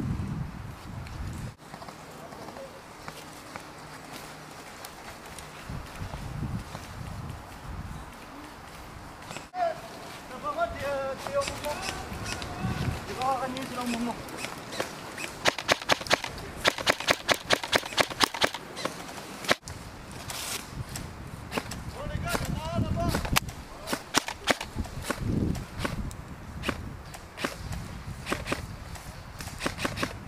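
Airsoft replica rifle fired close to the microphone in a quick run of sharp shots, about five a second, lasting some four seconds past the middle, followed by scattered single shots. Low voices can be heard shortly before the run.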